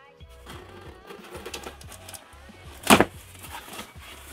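A folding knife cutting the packing tape on a cardboard shipping box, with cardboard scraping as the flaps are worked open. There is one loud, sharp sound about three seconds in as the box comes open. Background music plays quietly underneath.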